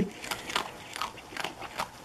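Opossum chewing crunchy taco shell, quick crisp crunches a few times a second.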